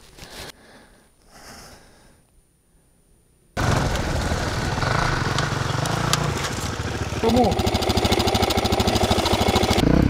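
Quiet for the first three and a half seconds, then an enduro dirt-bike engine cuts in abruptly and runs steadily with an even, rapid pulse to the end, getting a little louder over the last few seconds.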